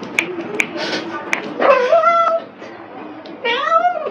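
Kitten meowing twice, two drawn-out meows, the second rising in pitch near the end.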